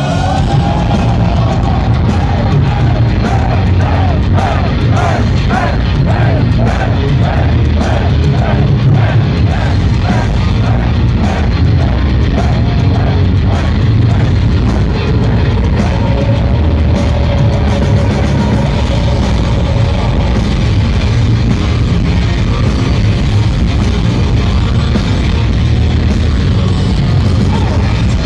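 Metal band playing live at full volume: distorted electric guitars, bass and drums, with a repeated lead melody over the first half or so.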